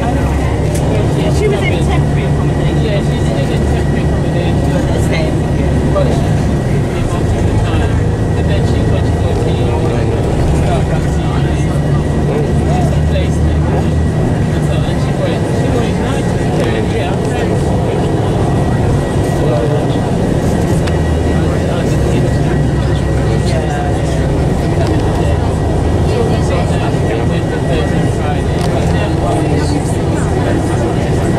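Inside a moving coach: a steady low drone of the engine and road noise, with passengers talking indistinctly over it.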